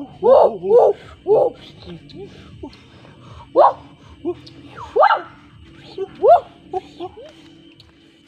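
About ten short yelping calls, each sliding up in pitch, coming at uneven intervals over a faint steady hum and a thin high tone.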